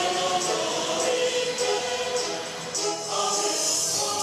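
Choral music: a choir singing slow, sustained chords.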